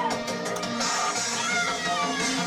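Minimal wave synthpunk played live at club volume: synthesizers over an electronic beat, with short gliding tones that rise and fall.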